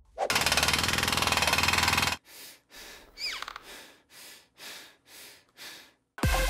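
Potatoes being mashed with a fork in a bowl: a loud, fast rattling run for about two seconds, then softer separate strokes about twice a second, one with a brief squeak.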